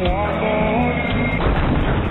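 Car crash sound effects from an old TV road safety ad: heavy impacts and breaking windscreen glass, over a pop song with a singer. The sound is dull and band-limited, as from an old TV recording.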